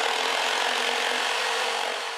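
Steady rasping noise of wood being cut, a sound effect matching a square being cut out of a wooden board. It begins to fade near the end.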